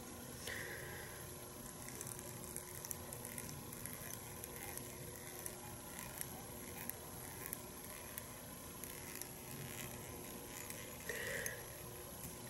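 Faint room hiss with a thin steady hum, and small soft ticks and rustles of fingers wrapping dubbed thread around a fly hook held in a vise.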